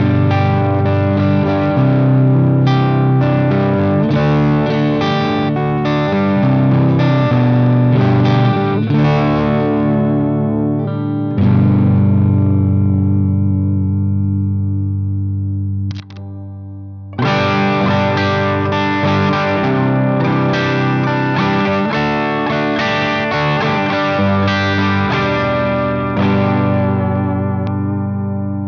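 Electric guitar played with distortion through the stock Ibanez PowerSound neck humbucker of a 2003 Ibanez S470DXQM: a riff of picked notes and chords. About halfway through, a chord is left ringing for several seconds and then cut off for a brief break. The riff then resumes and rings out near the end.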